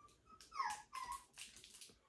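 Maltese puppy whimpering faintly: a few short, high whines, the longest falling in pitch about half a second in.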